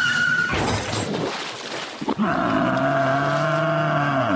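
A rush of noise lasting about a second and a half, then a man's voice holding one long, steady low note from about two seconds in.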